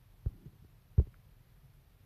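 Phone handling noise: dull, low thumps picked up by the phone's own microphone as its screen is tapped to switch apps. There is a softer thump near the start and a louder one about a second in.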